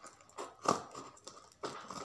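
Scissors cutting into a taped cardboard box: several short, sharp snips and scrapes of the blades on cardboard and packing tape.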